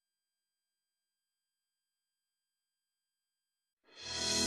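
Near silence, with music coming in sharply at the very end.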